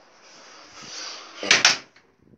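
A wooden door being shut in a small tiled room: two sharp knocks close together about a second and a half in, over a steady hiss.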